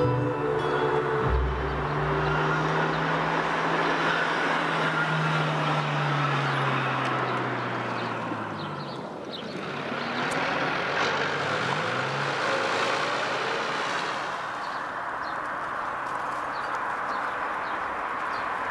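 Cars driving past on an asphalt road: tyre and engine noise swells as a car approaches, and its engine note falls in pitch as it goes by, about eight seconds in. Another vehicle passes shortly after, then steadier road noise as a further car approaches.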